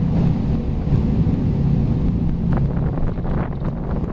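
Tour speedboat's engine running steadily at low speed, a constant low drone, with wind buffeting the microphone.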